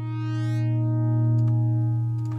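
Bitwig Poly Grid synthesizer patch sustaining a drone of stacked partials over a low fundamental, each partial's volume moved by its own random LFO. The drone swells a little and eases off, while the highest partials fade out one after another.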